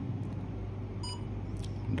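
SOUTH N6+ total station's keypad beep: one short electronic beep about halfway through, as a key is pressed to step back through the menus, over a steady low hum.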